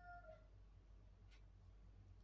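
Near silence over a steady low room hum. A faint drawn-out call in the background falls slightly in pitch and fades out about half a second in. A faint scratch of a felt-tip marker on paper comes later.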